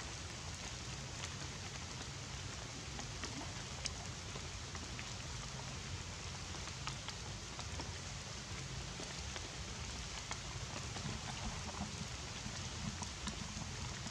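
Steady light rain falling on leaves and ground, with scattered small drip ticks and a low rumble underneath.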